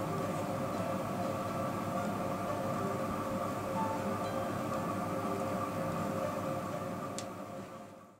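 Soft background music of sustained, chime-like tones that fades out near the end, with one faint click shortly before the fade.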